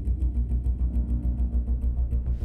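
Background tension music: a deep bass pulsing several times a second, with fast, even ticks above it and held low tones.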